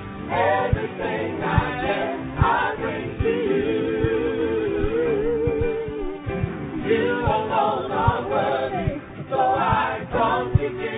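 A group of voices singing a worship song together, with instrumental accompaniment underneath.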